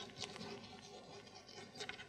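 Chalk writing on a blackboard: faint, short scratches and taps of the chalk as a word is written out by hand.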